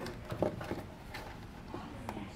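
Hands handling a round trailer dome light fixture and positioning it against a wooden wall: a few faint, irregular clicks and taps of the plastic housing and aluminium base.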